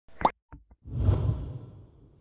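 Logo-intro sound effect: a short bright pop, two faint ticks, then a deep whoosh that swells up about a second in and fades away.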